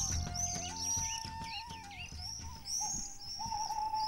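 Soft background film music: a single held melody line moving in small steps over low chords that fade out about halfway, with a bird chirping over and over above it.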